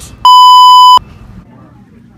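A single loud, steady electronic bleep tone lasting about three-quarters of a second, starting and stopping abruptly, of the kind dubbed over a word to censor it. Faint talk follows.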